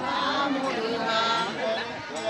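A crowd of many voices talking and calling at once, with snatches of singing.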